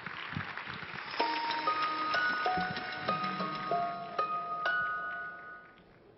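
Short stage music cue of bell-like notes, about eight struck one after another and each held so that they overlap, starting about a second in and fading out near the end, over the tail of applause.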